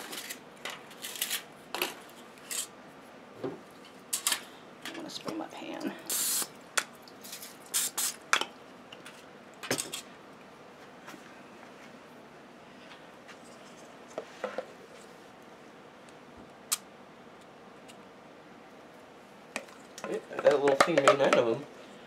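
Paper cupcake liners crinkling and rustling as they are handled and set into a metal muffin tin, with small clicks and taps, busiest in the first half. A voice is heard briefly near the end.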